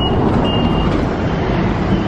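City bus passing close by, its engine and road noise loud and steady. A short high electronic beep sounds at the start and another about half a second in.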